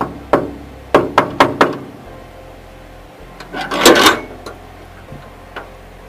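Knocking on a metal gate: two knocks, then four quick ones. About three and a half seconds in comes a longer, louder clatter as the gate is unlatched and opened.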